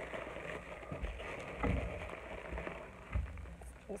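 Bubble wrap and plastic wrapping crinkling and crackling as it is handled, with a few dull thumps, the loudest about one and a half seconds and three seconds in.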